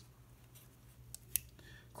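LEGO plastic pieces clicking as small hinged parts are folded shut by hand: a few faint clicks and one sharper click a little past the middle.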